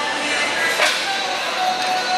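Steady hiss of room noise in a large gym hall, with one sharp clack a little under a second in.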